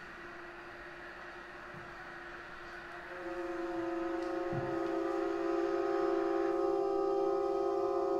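Solo violin bowing a long sustained note, at first thin and mixed with a hiss, then fuller and steadier, swelling louder about three seconds in.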